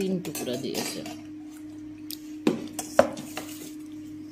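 A stainless steel plate clinks sharply twice, about two and a half and three seconds in, while rice is mixed on it by hand. A steady low hum runs underneath.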